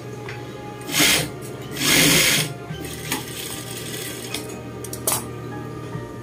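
Juki industrial sewing machine stitching in two short runs, a brief one about a second in and a longer one just after, with a light click near the end.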